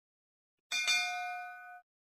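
Bell ding sound effect of a subscribe-button animation: two quick strikes close together, ringing out and fading for about a second before stopping short.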